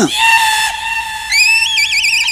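Comic sound effect from a TV serial's background score. A high, held whistle-like tone runs for over a second, then glides upward and turns into a fast warble.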